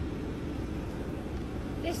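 Parked car's engine idling, a steady low rumble heard from inside the cabin. A man laughs briefly near the end.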